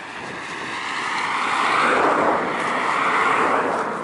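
A car passing close by on a road, its noise swelling to a peak about halfway through and then fading.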